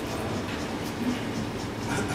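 Steady low rumble of room noise with a faint hum, with no distinct events.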